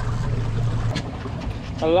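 A fishing boat's steady low machine hum, which cuts off abruptly about a second in, over a rushing of wind and water.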